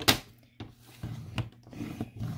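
Paper trimmer's blade carriage slid down its plastic rail with the scoring blade pressing a score line into cardstock: a few sharp clicks, then a rough rubbing scrape in the second half.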